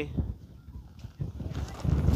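Footsteps crunching over loose, rough lava rock, getting louder near the end, with a low wind rumble on the microphone.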